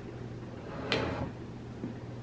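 A single light knock about a second in, a plastic spoon striking the rim of a plastic bowl, over a steady low hum.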